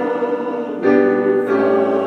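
Small church choir singing with piano accompaniment, sustained chords, moving to a new, louder chord a little under a second in.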